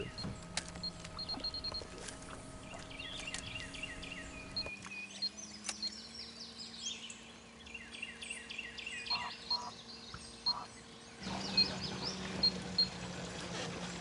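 Birds chirping and singing in repeated short phrases over a faint, steady hum.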